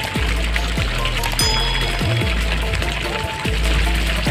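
Background music with a deep, steady bass and repeated drum hits.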